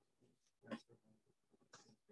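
Near silence: room tone, with two faint, brief sounds about a second apart.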